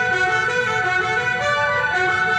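Orchestral music playing sustained, held chords.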